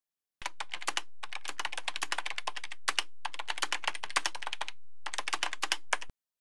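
Rapid typing on a computer keyboard: quick keystroke clicks in several runs broken by short pauses.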